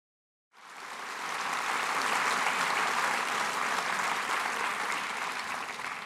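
Audience applauding. It comes in suddenly out of dead silence about half a second in, builds over the next second or so, then holds steady.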